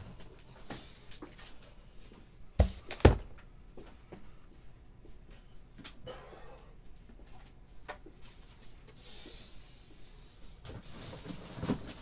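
Two sharp knocks about half a second apart, then quieter scraping and rustling as a cardboard case of trading-card boxes is handled and opened on a tabletop.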